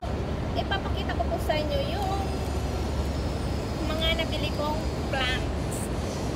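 Steady low rumble of city traffic from the streets below, with a woman's voice speaking briefly over it.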